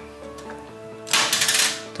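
Background music, with a loud rapid clatter of plastic Lego parts about halfway through, lasting about half a second, as the candy machine mechanism's push slide is shoved in once a nickel has unlocked it.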